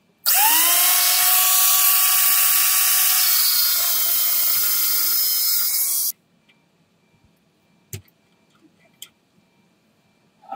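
Angle grinder with an abrasive disc spinning up with a rising whine, then grinding steel, taking the protruding pin through the universal-joint coupling down flush. The steady whine and hiss cut off suddenly about six seconds in.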